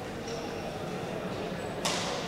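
Badminton racket striking the shuttlecock once, a single sharp crack near the end, over the steady murmur of an indoor sports hall.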